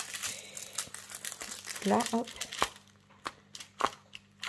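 Clear plastic packaging bag crinkling as it is handled, for about the first two seconds, followed by a few light separate clicks.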